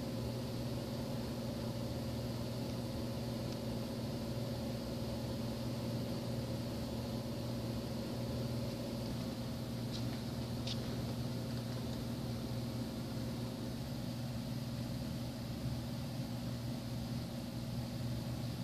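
Steady low mechanical hum with an even hiss, a background running machine or ventilation, with two faint clicks about ten seconds in.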